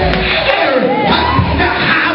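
Loud church worship: a man's voice through a microphone over band music, with the congregation calling out.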